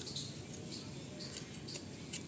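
Soft, scattered scrapes and clicks of hands and a small hand trowel pressing and scraping loose soil around the base of a freshly planted sapling.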